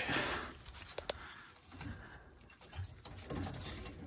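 Faint handling sounds of a gloved hand working at a furnace's pressure switch and its hose: soft rustling with one sharp click about a second in.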